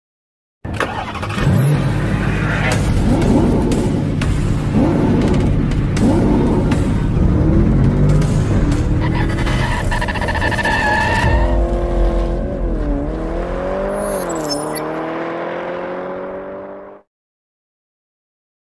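Engine revving sound effect in an intro sting, mixed with music and clicks. The revs dip twice and then climb steadily in the second half, and the sound cuts off suddenly about a second before the end.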